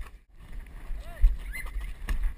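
Low rumbling thuds from a head-strapped action camera jostled by the wearer's movements, with a loud jolt a little over a second in. A short voice call rises and falls about a second in.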